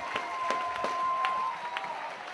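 Audience clapping and cheering, with scattered sharp claps and a long high cheer held until about one and a half seconds in.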